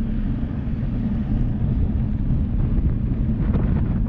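Steady low wind rumble buffeting the microphone of a camera mounted on a moving bicycle.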